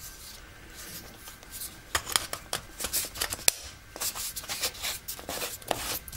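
Small ABS plastic camping lantern being handled and twisted apart in the hands: plastic rubbing and scattered light clicks, sparse at first and busier from about two seconds in.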